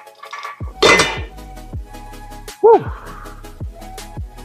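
Cable machine's weight stack plates clanking down as the set ends, a sharp metal clatter about a second in, over background music with a steady beat. A short, loud sound that rises and falls in pitch follows about two seconds later.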